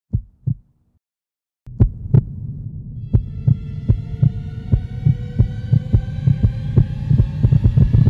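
Synthesized logo-intro sound design: two heartbeat-like thumps, a pause of about a second, then a low hum with thumps that come quicker and quicker while a layer of steady higher tones builds up.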